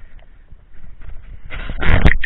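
Mountain bike rolling and jolting over a rutted dirt track, heard from the bike itself as a low rumble with small knocks, then a sudden loud noise near the end.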